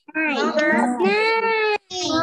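A child's high voice in a drawn-out, sing-song delivery, ending in one long held note, with a brief break near the end.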